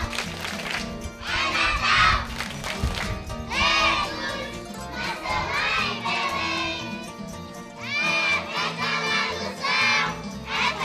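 A group of young children shouting and cheering together in several loud bursts, with music playing quietly underneath.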